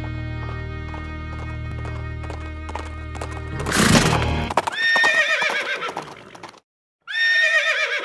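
Music with a low held drone and light knocks, broken off about three and a half seconds in by a loud short burst, then a horse whinnying twice with a quavering pitch and a brief silence between the two calls.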